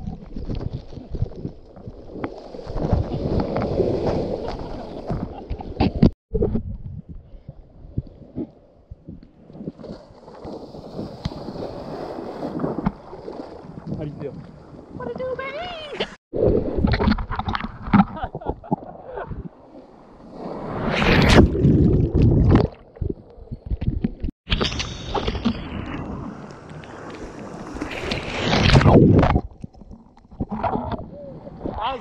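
Breaking shorebreak waves and churning whitewater rushing around a camera held in the surf, in several short clips that cut off abruptly. There are two big surges of whitewater, about two-thirds of the way through and near the end.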